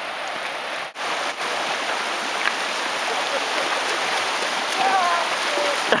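Fast, shallow mountain river rushing over rocks, a steady loud hiss of water, with a brief gap about a second in.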